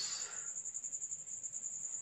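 A cricket chirping steadily: a high-pitched trill of rapid, even pulses.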